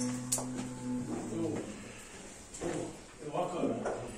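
Indistinct voices talking in a barn. In the first second and a half a low droning tone holds at one pitch, with a sharp click near its start.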